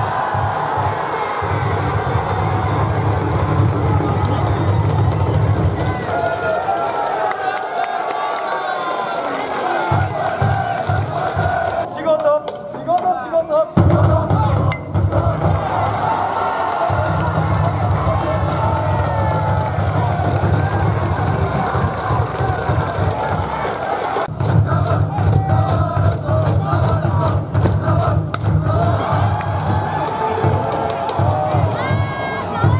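Cheering section in the stands: many voices chanting and singing together over band music with a steady pulsing drum beat. The music breaks off briefly around twelve seconds in, then picks up again louder.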